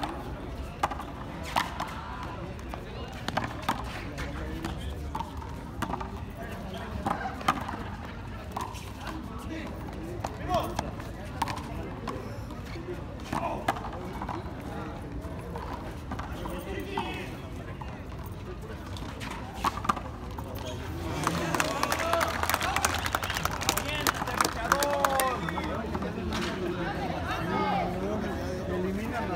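Frontón a mano rally: irregular sharp smacks of a bare hand striking the hard ball and the ball hitting the concrete wall and floor. Near the end the smacks come thicker, mixed with men's voices calling out.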